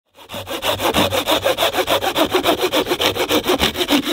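Felco 600 folding pull saw cutting through a thin branch with rapid, even strokes.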